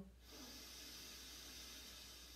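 A man inhaling slowly through his left nostril, with the right nostril closed by his thumb, in alternate-nostril breathing: a faint, steady hiss of air through the nose.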